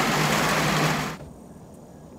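Steady hiss of rain falling on the deer stand's metal roof, with a low steady hum under it; it cuts off about a second in.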